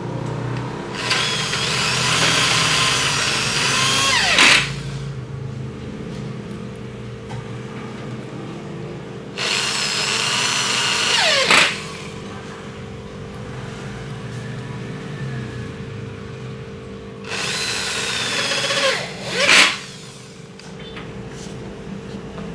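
Electric drill driving self-tapping screws through a metal roller bracket into an aluminium door frame. It runs in three bursts a few seconds apart, each lasting two to three seconds and ending in a falling whine as the screw tightens home.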